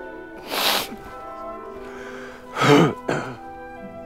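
A man sobbing loudly over soft, sustained orchestral music: a sharp sniffling gasp about half a second in, then a loud wavering sob and a short catch of breath near the three-second mark.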